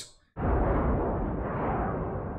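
Film sound effect of a large explosion: a sudden rumbling blast about a third of a second in that slowly dies away. It sounds dull, with the high end missing.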